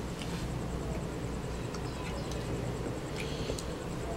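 A child chewing food, with faint short mouth sounds, over a steady low background rumble.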